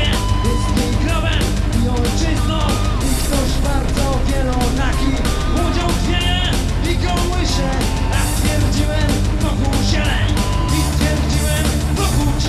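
Rock/metal band playing: electric guitars and bass guitar over a drum kit keeping a steady beat.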